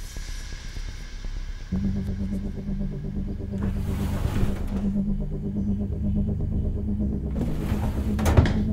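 A low, steady hum with a droning pitch sets in abruptly about two seconds in. Two brief swells of hissing noise come over it, one near the middle and one near the end.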